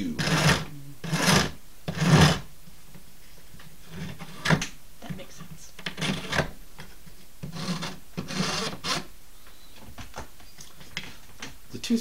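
Hand file rasping across a cow-bone fish-hook blank in separate strokes: three quick strokes in the first two seconds, then sparser, irregular strokes with pauses between.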